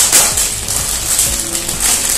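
Clear plastic packet crinkling and rustling in the hands as it is torn open and handled, with faint background music underneath.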